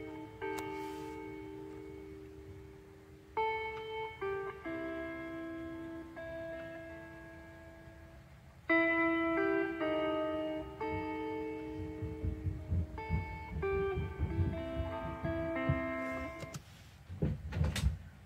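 Recorded instrumental track of plucked guitar notes, played back, with pauses between phrases. Low rumbling and a few loud bumps come in over the music in the last several seconds.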